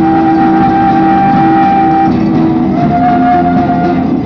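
Live folk ensemble of guitars, violins, a side-blown flute and a bass drum playing together, the strings strummed under a melody that holds one long note for about two seconds and then another slightly lower one near the end.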